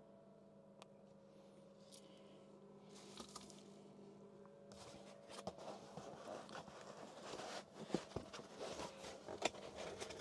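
Cardboard box flaps and a foam packing sheet being handled as the box is opened: faint rustling and scraping with a few light knocks. It starts about halfway through and gets busier toward the end.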